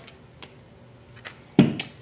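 Hands working an LWRCI SMG-45 submachine gun's receiver: a few faint clicks, then one sharp knock about one and a half seconds in, followed by a smaller click.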